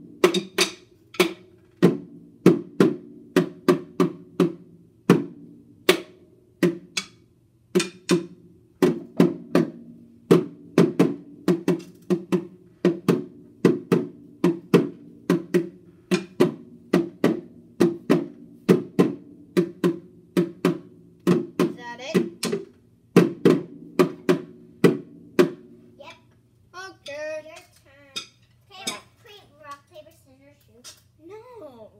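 A child beating a drum with drumsticks in a loose, uneven beat of single hits, about two a second, with the drums ringing on between strikes. About 26 seconds in, the hits stop and a child's voice takes over.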